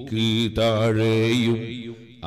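A man's voice chanting a recitation through a public-address microphone, drawn out in long, melodic, wavering phrases rather than plain speech.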